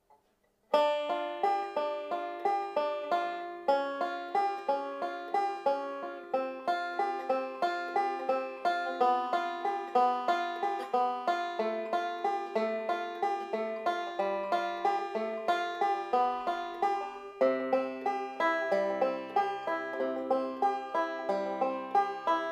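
Five-string banjo picked three-finger (Scruggs) style: a quick, even stream of rolling plucked notes, starting about a second in and running in cascading patterns, with lower bass notes joining for the last few seconds.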